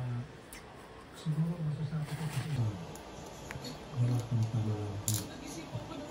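A man's low voice speaking quietly in two short stretches, with a few faint clicks and cracks of cooked crab shell being picked apart by hand.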